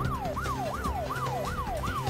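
Siren-like sound effect in a TV news 'breaking news' sting: a wailing tone that rises quickly and slides back down about three times a second, over a steady low musical drone.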